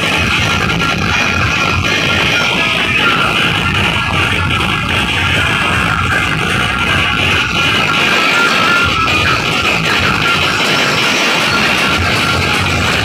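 Loud DJ dance music from a large outdoor DJ sound-system setup, heard from within the crowd. It plays at a steady, loud level without a break.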